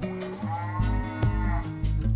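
Children's music with a steady beat and one long cow-like moo sound laid over it, from about half a second in to near the end.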